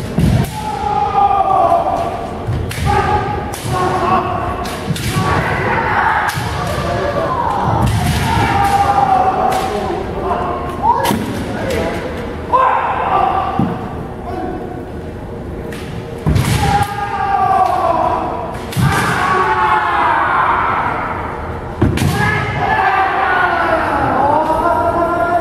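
Kendo fencers' kiai shouts, long drawn-out cries that often fall in pitch, mixed with repeated sharp knocks and thumps from bamboo shinai strikes and stamping feet on the wooden floor.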